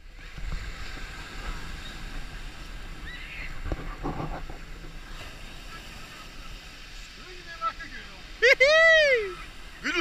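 Small waves breaking and surf washing up a pebble beach, with scattered voices of swimmers. Near the end comes one loud, high cry that rises and falls as someone wades into the cold sea.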